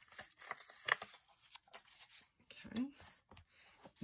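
Bone folder rubbed along the score lines of a sheet of designer paper to crease them: short, irregular scraping strokes with light paper rustling.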